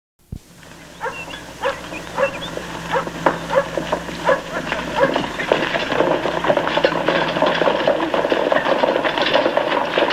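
A dog barks again and again, about once or twice a second, from about a second in. Around it a clatter of horses' hooves grows louder and denser as a group of horses is ridden in.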